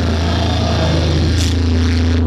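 A live rock band's amplified bass and electric guitar holding a loud, steady low chord as a song rings out, with a short crash-like hit about one and a half seconds in.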